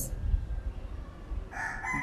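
A rooster crowing, starting about one and a half seconds in and still going at the end, over a low background rumble.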